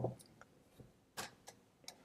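A few faint, scattered clicks from a computer keyboard and mouse, the loudest a little past halfway.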